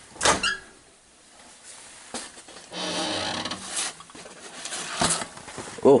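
Microwave door clicking open, then knocks and about a second of paper rustling as a microwave popcorn bag is handled and taken out.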